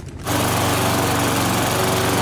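A small engine running steadily and loudly, a constant hum over a noisy rush, starting abruptly about a quarter second in.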